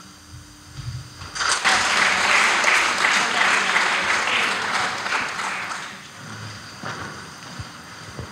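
Audience applauding, starting about one and a half seconds in and dying away after about five seconds.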